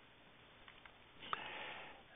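Near silence, then a faint breath drawn in through the nose for under a second near the end.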